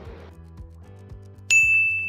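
A single bright notification-bell ding from a subscribe-button sound effect about one and a half seconds in, ringing on one clear tone that fades over about a second, over faint background music.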